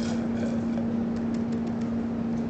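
A steady low hum with an even hiss, and a few faint light clicks in the second second.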